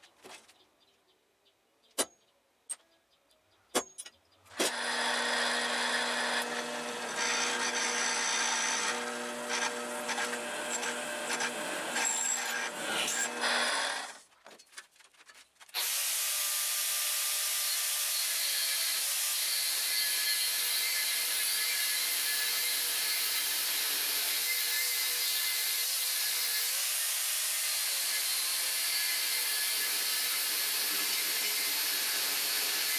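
A few sharp taps on steel, then an electric drill boring a hole through a flat steel bar, running steadily for about ten seconds before it stops. After a short pause an angle grinder starts cutting into the steel bar and runs with an even, hissing grind through to the end.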